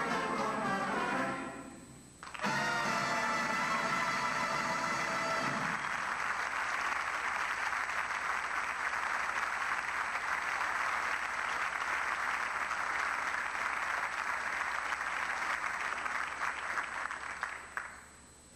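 A military concert band plays the close of a piece: a short pause, then a loud final chord with brass, held for about three seconds. Audience applause rises over the chord and goes on steadily for about twelve seconds, dying away near the end.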